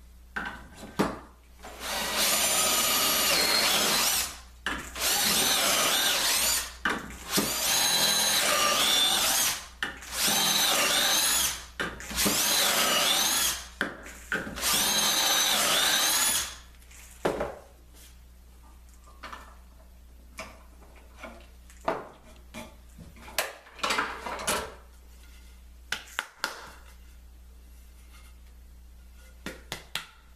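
Cordless drill boring dowel holes into end grain through a metal doweling jig, in six runs of about two seconds each, the motor pitch sagging and rising as the bit loads. Over the last dozen seconds come scattered knocks and clicks of the drill and jig being set down and handled.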